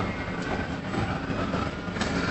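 Steady background noise, an even rumbling hiss, in a pause between spoken sentences.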